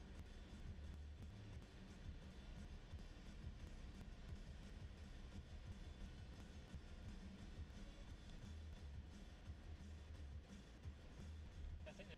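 Faint, steady low rumble of a Fiat minibus's engine and tyres heard from inside the cabin as it climbs slowly up a narrow road.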